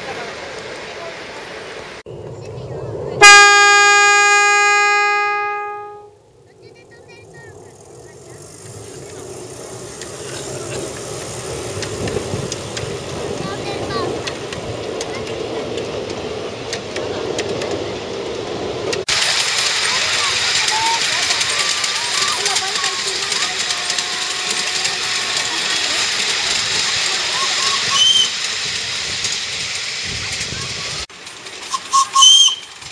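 Miniature live-steam locomotive's whistle: one long blast of steady pitch that starts sharply about three seconds in and fades out over about three seconds. Then the steady running noise of the ride train on its narrow-gauge track, with voices.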